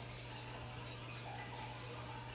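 Quiet kitchen room tone: a steady low hum under a faint hiss, with a couple of faint clicks about a second in.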